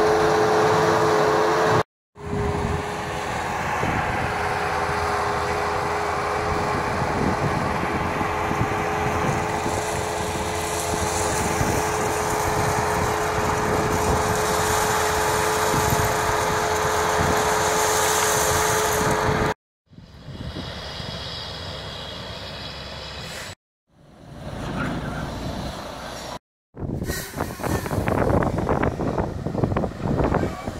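Bobcat 773 skid-steer loader's diesel engine running steadily as it works gravel. The sound breaks off sharply several times, and the later stretches are quieter and noisier.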